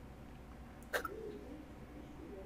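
A single short, sharp catch of breath like a sob, about a second in, followed by faint whimpering over quiet room tone.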